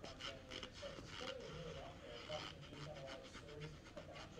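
Close mouth sounds of a person chewing and crunching a mouthful of cornstarch: a run of small, crisp, irregular clicks, faint overall.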